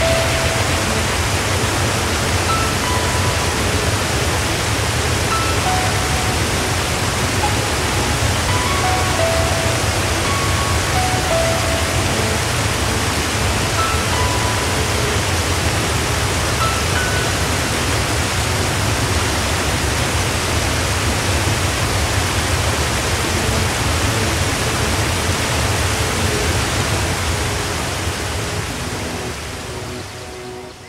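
Loud, steady rush of whitewater rapids, with a faint melody of scattered single notes over it. The water sound fades down near the end.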